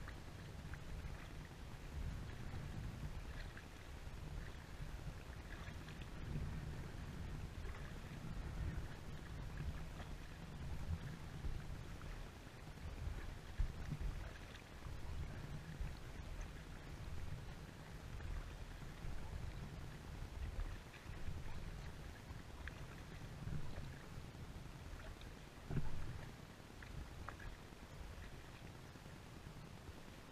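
Sevylor inflatable kayak under way on calm water: a low rumble of wind and water on the GoPro microphone, with faint scattered splashes and drips from paddling. Two louder bumps stand out, one about halfway through and one near the end.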